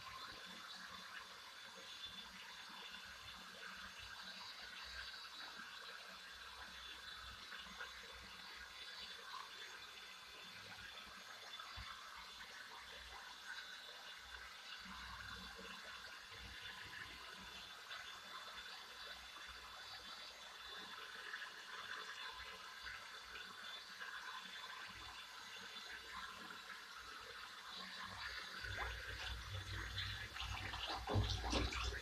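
Faint, steady running water: a bath being filled. A low rumble rises near the end.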